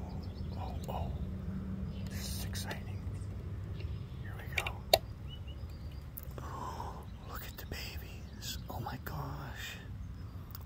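Soft whispering and breathing close to the microphone over a low handling rumble, with one sharp wooden click about five seconds in as the door of a wooden bluebird nest box is popped open.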